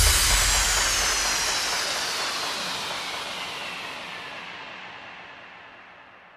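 A hissing wash of noise with faint tones gliding downward through it, fading steadily away: the closing sweep and tail of an electronic dance track.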